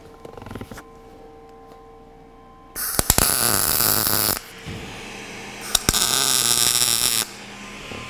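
MIG welding arc from a Lincoln POWER MIG 210 MP laying tack welds on steel railing: two loud bursts of crackling arc, each about a second and a half, starting about three seconds in and again about six seconds in.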